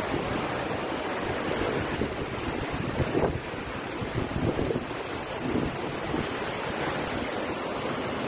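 Seawater rushing and washing across a flooded street, with wind buffeting the microphone: a steady noisy rush, with a few louder moments about three to five seconds in.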